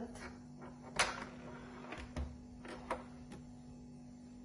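Clicks and knocks of a tilt-head stand mixer being handled as its head, fitted with a dough hook, is lowered over a steel bowl of flour. The loudest knock comes about a second in, followed by several lighter clicks, over a faint steady hum.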